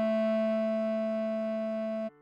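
A bass clarinet tone, likely synthesized, holding one long melody note that fades slightly, over a low held accompaniment note.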